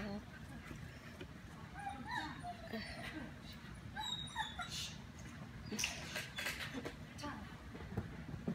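A dog whining and giving short yips and barks, a brief call every second or so.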